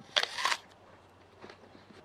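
A short burst of handling noise on a handheld camera in the first half second, then a low, quiet background.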